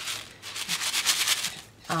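Loose sequins rattling inside the clear window of a handmade shaker card as it is shaken quickly back and forth, in a fast run of crisp strokes.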